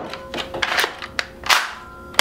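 Hard plastic clacks of a Nerf Elite 2.0 Technician blaster being handled and its pump action worked: a few sharp clicks, the loudest about one and a half seconds in.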